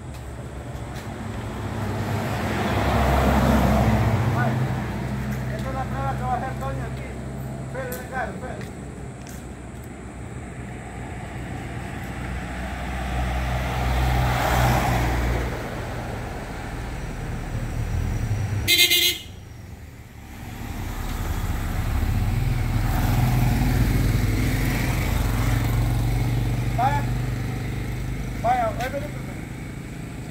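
Road traffic: vehicles passing one after another, the engine and tyre noise swelling and fading about three times. A short vehicle horn toot a little past halfway is the loudest sound.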